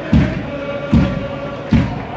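A slow, steady drum beat, one low thump about every 0.8 seconds, with a held chanted or sung note over it.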